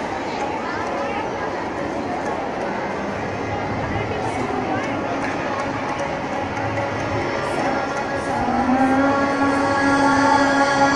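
Murmur of children and audience chatter under a large roof. About eight and a half seconds in, a harmonium begins a steady held note.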